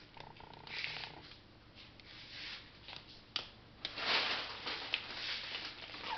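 Soft rustling and crinkling of plastic-wrapped bread packs being handled, in a few quiet swells, with two light clicks about three and a half seconds in.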